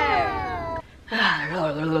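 A long, held, high-pitched voice call gliding down in pitch, cut off abruptly under a second in. After a brief gap, a woman sings a drawn-out, playful 'la, la' that bends up and down in pitch.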